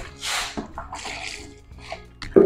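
A short splash of liquid soap mixture being stirred by hand in a plastic basin, followed by quieter sloshing.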